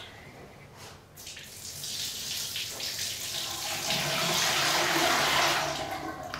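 Water poured out of a tall glass cylinder into a sink basin: a steady splashing pour that starts about a second in, grows louder through the middle and eases off near the end as the glass empties.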